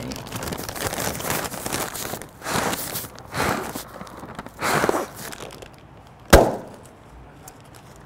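A brown paper bag crinkling in the hands, then blown up with three breaths and burst a little after six seconds in with one sharp bang.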